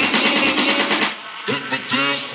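Electronic dance music in a continuous DJ mix. About a second in, the full sound drops out, leaving a quieter, sparser break with a few pitched notes as a transition.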